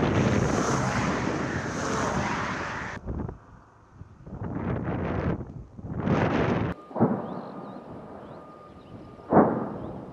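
Distant artillery fire: several heavy rumbling booms, one long one in the first few seconds and shorter ones after, with a sharp, loud blast near the end that dies away.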